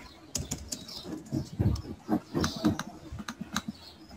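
Typing on a computer keyboard: a quick, irregular run of keystrokes, each a sharp click with a low thud.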